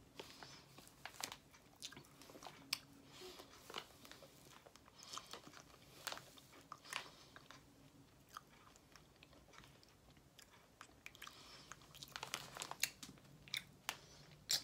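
Faint mouth sounds of someone eating cotton candy: scattered small clicks and smacks of chewing, with a few rustles of the plastic candy bag.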